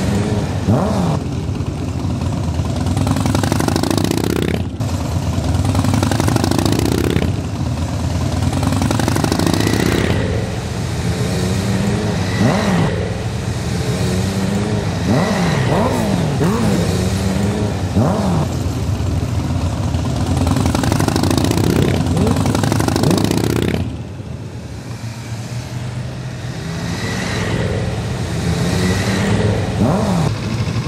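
Motorcycles riding past one after another, each engine's pitch rising and falling as the riders open and ease the throttle. The sound drops for a few seconds near the end before the next bikes come through.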